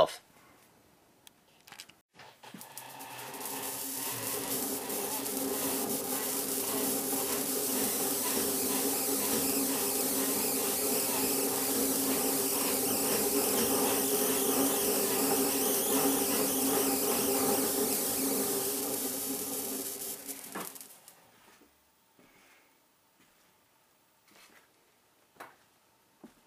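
Hand-cranked Wimshurst machine whirring as its discs spin, with a steady hum and a high hiss; it winds up to speed over about three seconds, holds steady, and stops about twenty seconds in.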